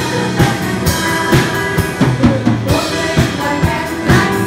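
Live church band playing an instrumental passage of a hymn, with no singing: a drum kit's bass drum and snare keep a steady beat of about two hits a second over held bass notes and keyboard.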